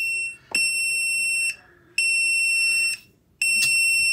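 SkyRC BD250 LiPo discharger's buzzer sounding a repeated high-pitched alarm: the tail of one beep, then three more of about a second each with half-second gaps. It is the end-of-discharge signal: the four-cell pack is already down to the set voltage, so the unit reports done at once.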